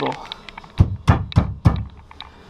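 Four dull wooden thunks about a third of a second apart: the wooden loft bed board knocking against its dowel supports as it is pushed to test that it stays put.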